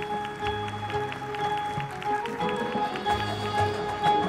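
Marching band playing: held wind-instrument notes over a low bass line, with a run of short percussion ticks.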